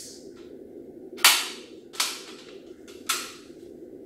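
Hinged joints of a folding aluminium projector-screen frame snapping into place as it is unfolded: three sharp clicks about a second apart, the first the loudest.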